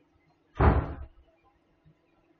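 A single loud thump a little over half a second in, lasting about half a second.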